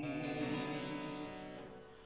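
Harpsichord continuo chord in a Baroque opera recitative, struck at the start and dying away over about two seconds between sung lines.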